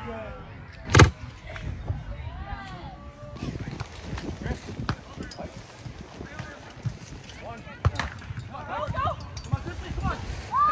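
A volleyball struck hard by a player's hand: one loud, sharp smack about a second in and another sharper hit near the end of the rally.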